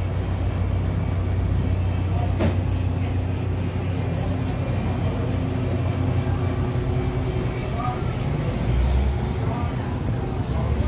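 Steady low hum of refrigerated display cases and fans in a market hall, with faint voices in the background.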